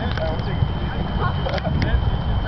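Faint, distant voices over a continuous low rumble.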